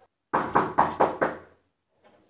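Knocking on a door: about five quick raps, roughly four a second.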